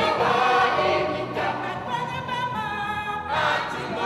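African choir singing a lively song together, with long notes held in the middle and a new phrase coming in near the end.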